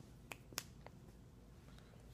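Near silence broken by three small clicks in quick succession within the first second.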